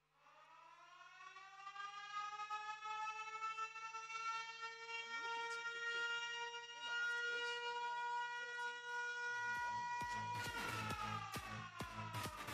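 Opening of an electronic dance track: a siren-like tone rises in pitch out of silence, then holds and swells in loudness. About ten seconds in, a steady dance beat comes in as the tone slides back down.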